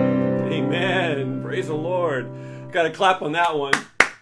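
The last strummed chord of an acoustic guitar ringing out and slowly fading, with a man's voice over it. A man starts speaking about three seconds in, and a single sharp hand clap comes just before the end.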